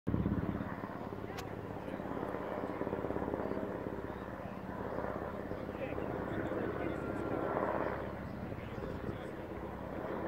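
Helicopter flying high overhead, its rotor giving a steady, fast beating throughout, with voices murmuring in the background.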